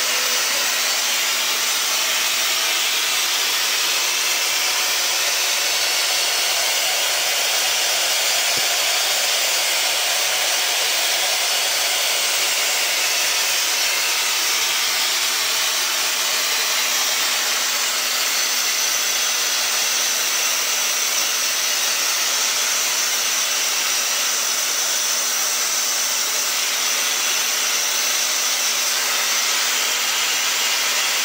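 Metal lathe running steadily, turning a sheet-metal Lily vortex impeller held in its chuck: an even, unbroken whirring noise over a constant low hum.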